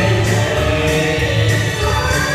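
Live singing through handheld microphones over a recorded backing track with a steady bass beat and held keyboard chords.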